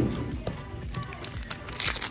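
Background music with the crinkling of a foil Pokémon booster pack wrapper being handled and opened. The crinkling gets louder near the end.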